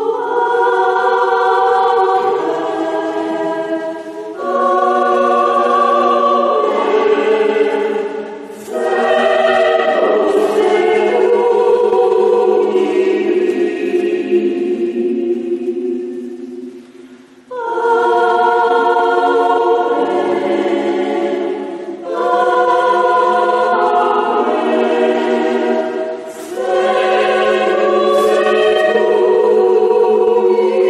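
Mixed polyphonic choir singing a cappella in a church: sustained chords in phrases, with short breaks between them and a longer pause a little past halfway.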